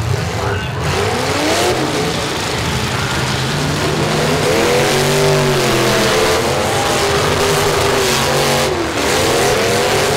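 Several eight-cylinder demolition derby cars running and revving together, engine pitch repeatedly rising and falling as they accelerate and back off.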